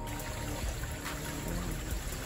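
Soft background music over a steady hiss of running water from a creek.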